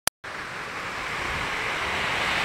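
A short click, then the steady rushing of river water pouring from a dam spillway, growing slowly louder, with wind noise on the microphone.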